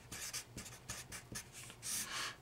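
Green Sharpie felt-tip marker writing on paper: a quick run of short, faint scratchy strokes as letters are drawn, with a slightly louder stroke near the end as the word is underlined.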